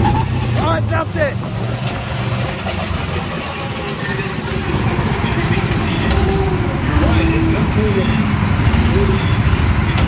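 Small petrol go-kart engines running as the kart slows and rolls into the pit lane among other karts. The engine drone eases off a couple of seconds in and grows louder again after about five seconds.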